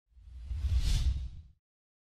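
A whoosh sound effect over a deep rumble, swelling up to a peak about a second in and fading out before the second is over.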